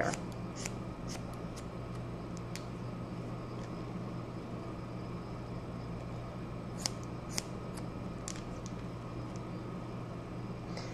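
Haircutting scissors snipping through sections of wet hair held between the fingers: a scattering of faint, crisp snips, with two louder ones a little past the middle.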